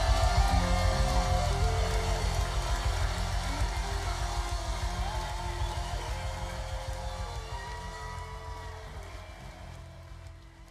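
Live gospel band music on keyboards, guitar, bass and drums, with long held notes over the bass, fading out steadily to quiet by the end.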